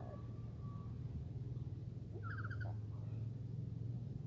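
Black-capped lory giving one short call, a quick run of rapid notes, a little past halfway, with faint thin notes near the start. A steady low hum runs underneath.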